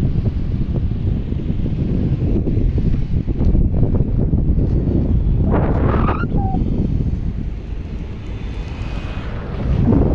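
Wind buffeting the microphone as it moves at road speed: a loud, steady low rumble, with a brief higher sound about six seconds in.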